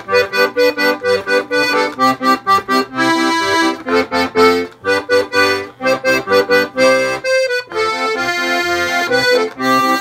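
Piano accordion, a Giuseppe Venuti, playing a polka solo: a melody on the keyboard over a bouncing rhythm of short detached chords, with a few longer held notes.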